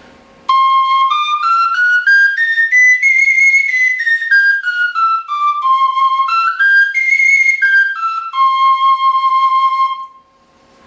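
A friscalettu, the Sicilian cane duct flute, playing a one-octave C major scale up and back down, then a quick run up and down, ending on a long held low note. This is the louder-voiced of two friscaletti in C, played at full breath to show the difference in volume.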